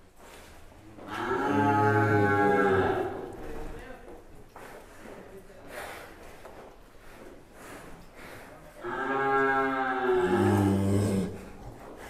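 A large bull mooing: two long, low moos, one about a second in and another about nine seconds in, each lasting about two seconds.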